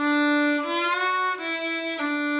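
Solo fiddle bowing sustained notes as a slide: the note steps up in pitch about half a second in and keeps gliding upward briefly, then drops back to the lower note about a second later.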